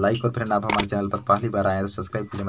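A man speaking in Hindi, with a short sharp click about two-thirds of a second in: the mouse-click sound effect of an on-screen subscribe button being pressed.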